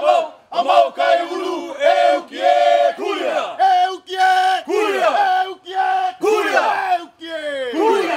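Group of voices chanting a Hawaiian chant in unison, loud, in short held phrases that often end with a falling pitch, with a longer drop near the end.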